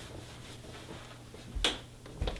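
A single sharp click with a low thud, about one and a half seconds in, over a faint steady low hum.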